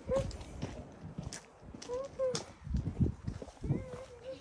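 Footsteps on a gravel and concrete path while walking, with the rustle of a handheld phone swinging about. Several brief wordless vocal sounds slide in pitch, the first right at the start and more about halfway through and near the end.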